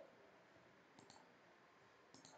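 Near silence, with a faint computer mouse click about a second in.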